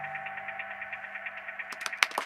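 The band's final held chord dying away, an electric guitar ringing on through effects with a fast, even flutter as it fades. Scattered clapping starts near the end.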